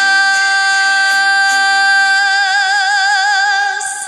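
A woman's voice holding one long, loud final note of a ranchera over band accompaniment, with a vibrato setting in about halfway through. The note ends just before the close, as applause breaks out.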